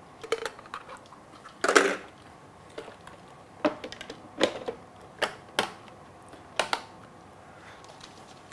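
Scattered plastic clicks and knocks as the parts of a Beaba Babycook baby food maker are handled: the lid opened and a part lifted out, with one louder clatter a little under two seconds in and a run of about six crisp clicks after it.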